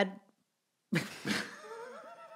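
Two people laughing: a high-pitched laugh that cuts off just after the start, a short gap of dead silence, then more laughter with a long, slowly rising high note.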